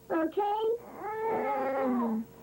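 Sped-up, chipmunk-pitched human voice making wordless sounds: two short high calls, then a long held note that drops in pitch near the end.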